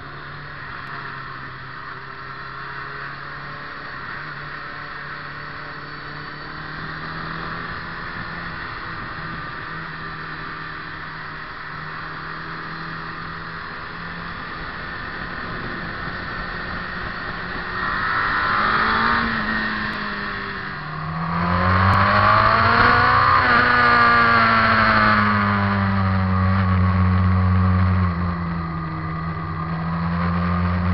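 Suzuki GS1100E's air-cooled inline-four engine running on the move, a steady drone at first. It surges briefly past the halfway mark. About two-thirds in it pulls harder and louder, the pitch climbing and then easing down gradually over several seconds.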